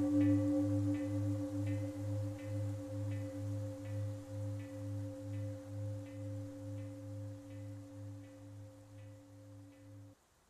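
A struck bell rings out and slowly fades. Its low hum wavers in a slow pulse of about two beats a second under a steady ringing tone.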